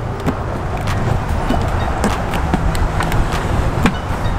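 Steady low outdoor rumble with a few light taps and ticks as duct tape is pressed down along the edge of a plastic bin lid.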